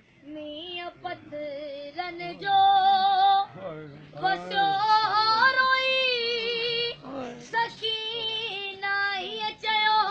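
A boy's solo voice chanting a noha, a Shia mourning lament, in long held notes that waver and slide in pitch, with short breaths between phrases.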